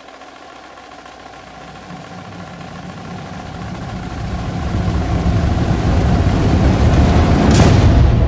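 Opening of a film soundtrack: a low rumble with faint held tones above it swells steadily from nothing to loud. It peaks in a sharp whooshing hit just before the end.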